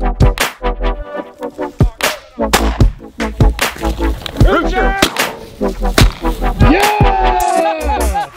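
Electronic music with a steady, heavy-bass beat. A voice calls out over it twice, once in the middle and once in a long falling call near the end.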